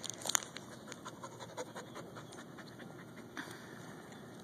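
A dog panting in short, quick breaths, with a sharp click about a third of a second in.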